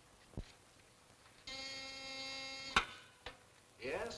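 An electric buzzer sounds steadily for about a second and cuts off with a sharp click. A fainter click follows shortly after.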